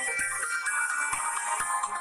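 Electronic background music: a bright, high synth melody stepping from note to note over a light, steady beat.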